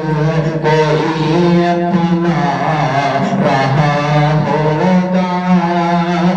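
A man singing Urdu poetry into a microphone in a melodic chant, with long held, wavering notes.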